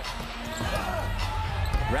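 Basketball being dribbled on a hardwood court during live play, over the steady hum of an arena crowd.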